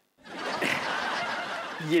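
Sitcom laugh track: a burst of crowd laughter that starts just after the beginning and runs about two seconds.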